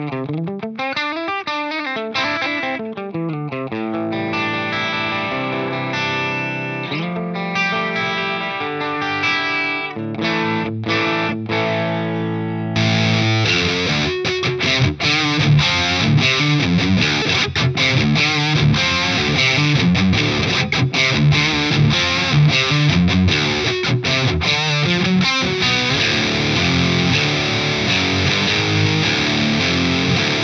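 Electric guitar, a Fender Stratocaster, through a Synergy DRECT Dual Rectifier–style preamp module. For the first dozen or so seconds it plays a lower-gain tone with clearly ringing notes and a slide at the start. About 13 seconds in it suddenly switches to the second channel's high-gain red mode: a dense, distorted tone played as tight riffing with many short stops.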